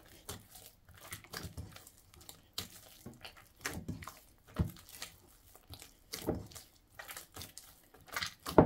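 Hands kneading soft, sticky yeast dough in a bowl, squeezing in melted butter: irregular wet squelching and squishing sounds.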